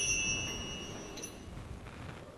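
Tail of the altar bells rung at the elevation of the chalice, the ringing fading away within the first second.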